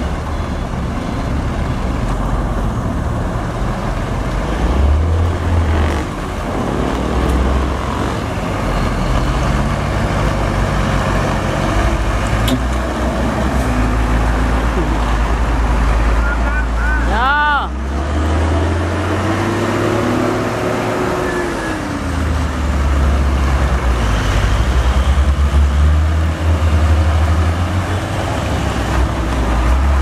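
Heavy diesel trucks, a Hino and a hot-asphalt tanker, rumbling past close by at crawling speed over a potholed road, their engine note rising and falling as they work through the ruts. A brief high-pitched squeal cuts in about halfway through.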